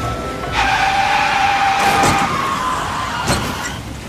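Background music with a car-crash sound effect: a tyre screech on a wet road begins about half a second in, with sharp impacts near the middle and again after three seconds.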